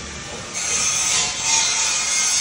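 Rhythmic rasping, scraping strokes, a little more than one a second, starting about half a second in.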